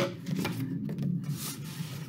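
A knock as scissors are put down on a table, then paper-plate card rustling and scraping as the cut halves are handled.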